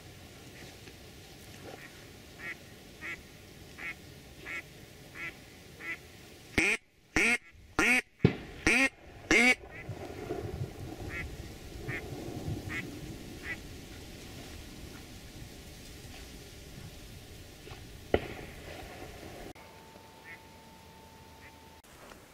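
Duck quacking: a run of evenly spaced quacks, under two a second, then a handful of much louder quacks in quick succession, then a few softer ones.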